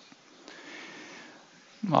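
A faint breath drawn in through the nose, close to a headset microphone, lasting about a second in the middle of a pause. A man starts speaking near the end.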